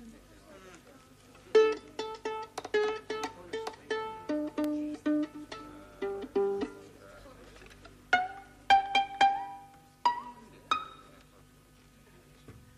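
Solo violin played pizzicato: plucked notes in quick runs starting about a second and a half in, then after a short pause a few higher plucked notes toward the end.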